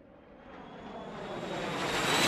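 Jet aircraft approaching: engine noise growing steadily louder, with a faint high whine on top.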